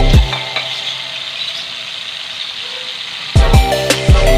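Background music with a steady beat cuts out just after the start, leaving the steady sizzle of a boneless milkfish fillet frying in hot oil in a pan; the music comes back about three seconds in.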